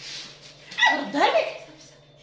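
A short, loud pitched cry about a second in, bending up and down in pitch.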